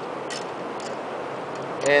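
A few faint clicks from a small hand wrench loosening the governor-bracket bolts on a small single-cylinder engine, over steady workshop background noise.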